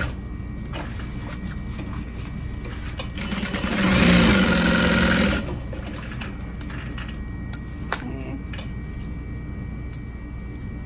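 Juki DU-1181N industrial walking-foot sewing machine stitching in one short run of about two seconds, starting about three and a half seconds in, its motor rising to speed and then holding steady. Light clicks of handling follow as the fabric is taken out.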